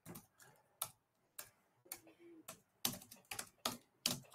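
Faint computer keyboard typing: a few separate keystrokes, then a quicker run of keystrokes near the end as a line of code is entered.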